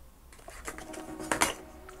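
Paper instruction manual and cardboard box being handled: light rustling with a few short taps, the sharpest about a second and a half in.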